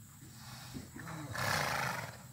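A horse at the gate giving a loud, harsh, breathy call that builds over about a second and peaks just before it stops.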